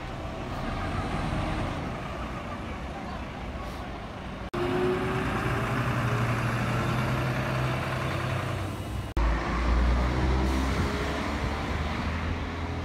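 Large coaches' diesel engines running as they drive off across a car park, a steady low engine hum broken by two abrupt edits; in the middle section the engine note rises a little as the coach pulls away, and the last section carries a heavier low rumble.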